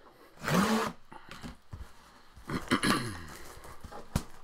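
Plastic shrink wrap torn and pulled off a cardboard box, crinkling in two loud bursts. Each burst carries a short low pitched sound, rising in the first and falling in the second.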